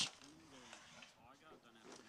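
Faint, indistinct distant voices over low background noise.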